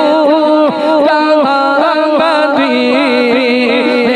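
A man singing a naat, an Urdu devotional song, solo into a microphone, holding long notes and bending them in ornamented turns.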